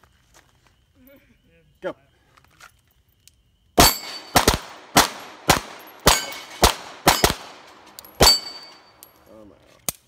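Two pistols, a Glock 19 and a Beretta, fire about ten quick shots over some four and a half seconds, starting about four seconds in. Steel plates ring with a ding when hit.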